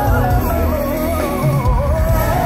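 Live amplified R&B ballad: a male vocal group singing a slow, wavering melody line with vibrato over band accompaniment and steady bass.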